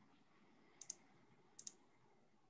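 Near silence with two quick pairs of small, sharp clicks, one pair just before a second in and another about two thirds of the way through.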